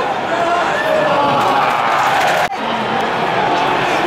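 Football stadium crowd: a dense, loud mass of many voices from the stands, broken by a sudden momentary drop about two and a half seconds in.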